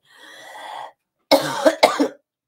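A woman coughing: a soft breathy lead-in, then a quick run of about three sharp coughs about a second and a half in.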